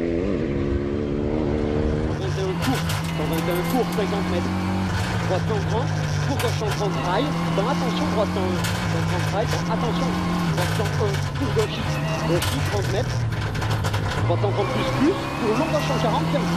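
Rally car engine revving up as the car accelerates along the stage. It is then heard from inside the cabin, running hard with its pitch shifting up and down in steps.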